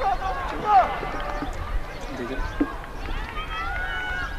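Distant voices of players and onlookers shouting and calling across a soccer pitch, in short scattered bursts over a steady low rumble.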